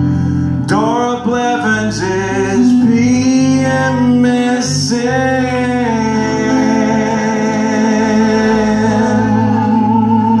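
Live band music: a male lead vocalist singing over strummed acoustic guitars, with a long held note through the second half.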